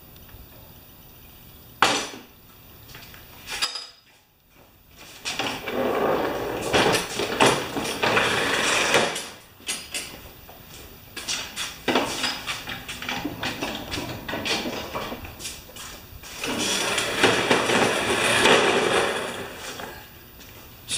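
Clattering and rolling of a steel scissor lift cart and a push mower on a concrete floor as the cart is lowered, the mower taken off and the cart wheeled away. There is a sharp click about two seconds in, then several bursts of rattling.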